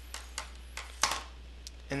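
A small cut metal washer handled between fingers, giving about five light clicks and taps over a steady low electrical hum, the loudest about a second in.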